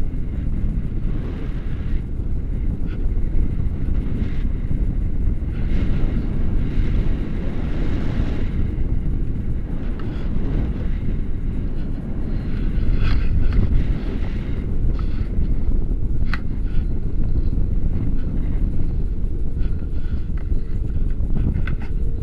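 Airflow buffeting a camera microphone held out on a selfie stick during a tandem paraglider flight: a steady, loud, low rumble of wind noise.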